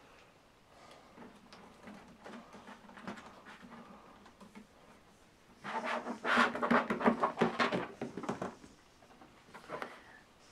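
A thin translucent plastic sheet being bent and handled against a metal frame: soft rustling and scraping, then a loud crackling, flexing rustle of the sheet from about six seconds in to eight and a half seconds.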